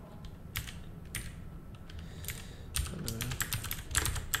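Typing on a computer keyboard: two separate keystrokes, then a quick run of keystrokes in the last second or so.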